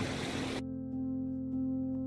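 Soft background music of long, held notes. A hiss from the outdoor recording sits under it and cuts off about half a second in.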